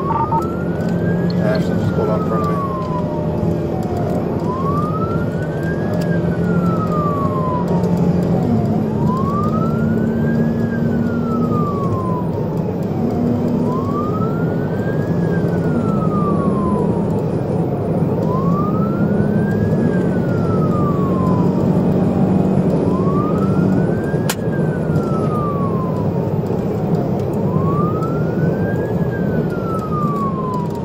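Police cruiser siren on a slow wail, rising and falling about once every four and a half seconds, heard inside the car over steady engine and road noise while it drives at pursuit speed.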